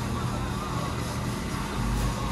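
Steady background din inside a small hot dog shop: a constant low hum under an even hiss, with no distinct events.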